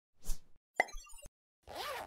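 Cartoon-style sound effects for an animated logo intro: a soft pop, then a sharper click about a second in, then a short whooshing swell whose pitch rises and falls near the end.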